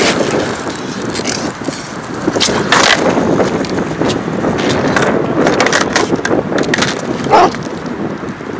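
Skateboard wheels rolling on an asphalt path with a continuous rumble, broken by several sharp clacks of the board being popped and hitting the pavement during flip-trick attempts, one of which leaves the board upside down.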